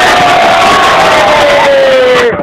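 A group of voices chanting together, holding one long, loud drawn-out note that slowly falls in pitch.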